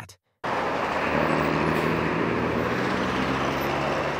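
Busy city street traffic: a steady mix of engine hum and road noise that starts abruptly about half a second in.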